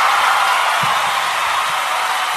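A loud, steady rushing hiss, even and without pitch, like static or white noise.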